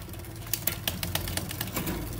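Irregular sharp clicking from a bicycle's rear drivetrain, the chain ticking over the cassette and rear derailleur as the rear wheel spins on a stand, starting about half a second in. The rear gear is not shifting properly and the derailleur needs adjusting.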